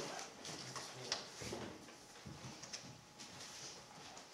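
Faint rustling and a few light clicks and knocks in a quiet room, with one sharper click about a second in: people handling things, such as Bibles being opened and pages turned.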